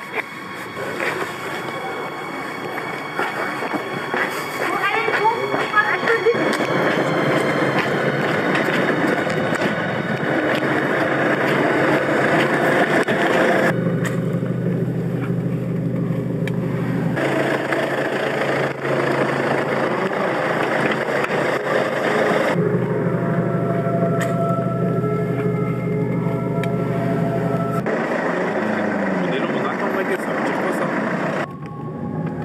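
A car engine running steadily in stretches, mixed with street noise and indistinct voices.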